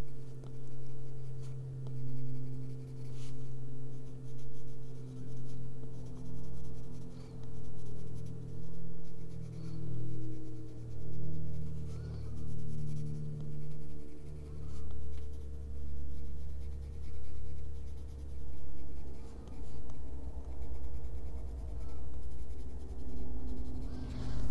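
Coloured pencil stroking back and forth on paper, blending a layer of pink, in an even rhythm of about one stroke a second. A steady low hum runs underneath.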